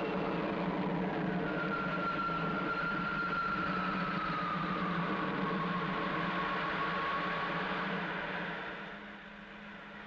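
Spaceship take-off sound effect: a steady whirring engine drone with a low hum under it. A thin whine slowly falls in pitch over several seconds, and the drone dies down near the end.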